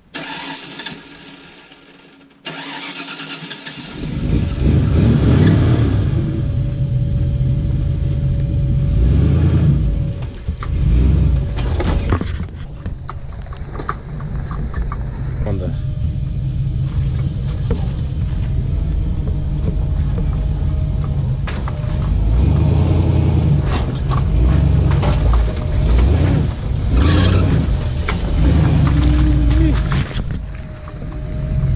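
Engine of an older full-size 4x4 pickup running under load and revving as it crawls up a rocky trail through puddles.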